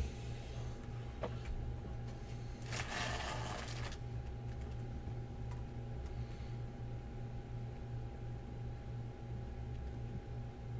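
Steady low electrical hum with a faint high whine. About three seconds in comes a rustle lasting about a second, as a hand moves the foil card packs on the table.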